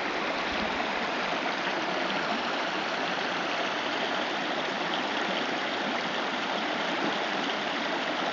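Shallow stream running over and between stones, a steady rush of water.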